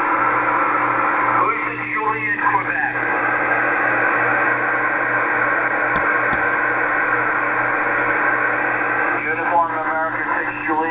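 Amateur radio receiver tuned to a single-sideband signal on the 20-metre band: steady muffled hiss with a low hum, and a weak, hard-to-make-out voice coming through the noise about a second and a half in and again near the end.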